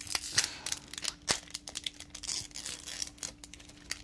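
Foil wrapper of a Magic: The Gathering Double Masters booster pack crinkling as it is handled, in a string of short crackles.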